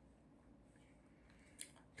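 Near silence broken by one short, sharp plastic click about one and a half seconds in: a battery lead connector being pushed home onto the receiver wiring of an RC buggy.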